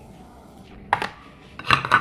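Plastic container of chopped cilantro being handled: one sharp knock about a second in, then a short clatter near the end.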